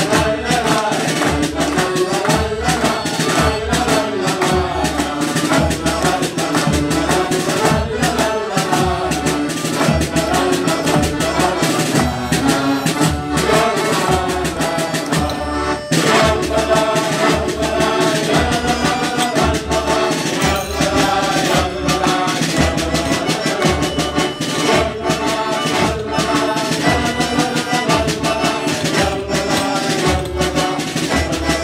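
Accordions playing an instrumental interlude between verses of a sea shanty, over a steady low beat, with hand-clapping along.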